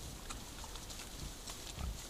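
Wild boar grunting low twice, the second grunt louder near the end, with faint crackling of leaves and twigs underfoot.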